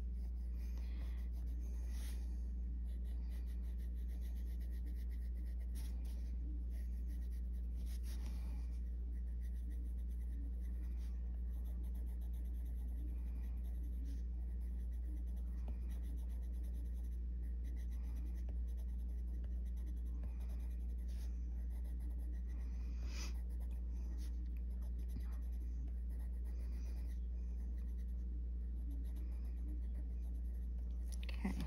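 Faber-Castell Polychromos coloured pencil scratching lightly on the paper of a colouring book in many short strokes, over a steady low hum.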